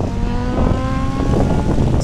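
Passing traffic at a street intersection: one vehicle's engine accelerating, its note rising slightly for about a second and a half, over a steady low rumble of other traffic.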